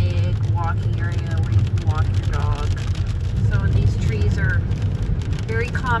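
Steady low road and engine rumble inside a car's cabin as it drives on rain-soaked roads, with a person talking over it now and then.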